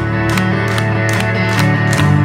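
Live rock music with an electric guitar playing chords over a steady beat, with no vocals.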